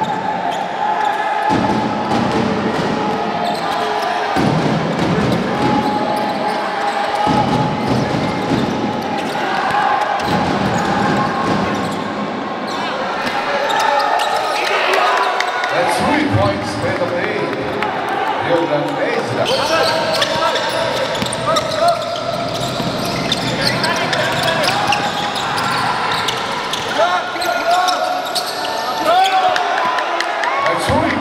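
A basketball bouncing on a hardwood gym floor during live play, with short sharp impacts and indistinct voices from players and spectators echoing through the hall.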